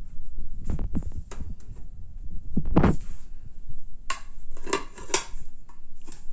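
Handling noise from a phone being moved about: low rumbling and thumps. Knocks and a few sharp clinks of a metal cake tube pan and plate come near the end.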